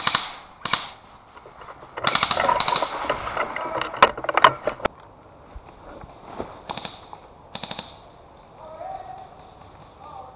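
Airsoft electric rifles (AEGs) firing short full-auto bursts of rapid shots. The longest burst comes about two seconds in and lasts about a second, with single sharp cracks about four seconds in and lighter bursts near seven and eight seconds.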